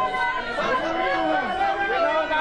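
A crowd of onlookers calling and shouting over one another, several voices holding long, high calls at once.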